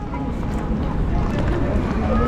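Wind blowing across the camera's microphone outdoors: a steady low rumble that grows slightly louder.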